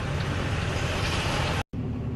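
Snowplow truck engine idling, heard from inside the cab as a steady low rumble with a hiss over it. The sound cuts out for a moment near the end.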